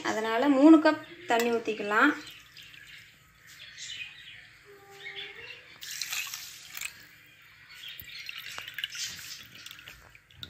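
Water poured from a glass tumbler into a steel vessel of washed kodo millet, with the strongest pour about six seconds in and more trickling after. This is the measured cup of cooking water going in.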